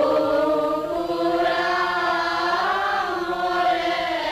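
Sung vocals in a slow, chant-like style, holding long unbroken "oh" vowels that swell up in pitch and fall back near the middle.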